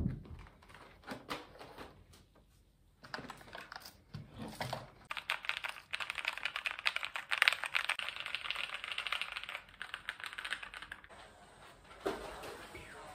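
A single thump at the very start, then keys pressed on a backlit computer keyboard held in the hands: scattered clicks at first, building from about three seconds in to fast, dense typing that thins out near the end.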